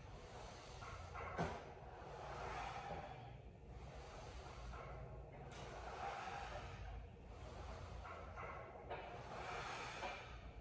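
A man's exertion breathing, soft inhales and exhales swelling and fading every second or two in time with the repetitions of a strength exercise, with one short click about one and a half seconds in.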